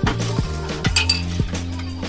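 Dishes clinking against each other in a kitchen sink as they are washed by hand, with a bright clink about a second in. Background music with a steady beat plays throughout.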